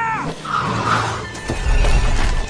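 Animated-film action soundtrack: a cartoon race car's high yell falling and cutting off near the start, then the car speeding past with a rising low rumble and clattering debris toward the end, under background music.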